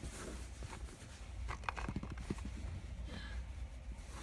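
Light, irregular taps and rustling of small foam toy bullets being scooped up by hand from bedding.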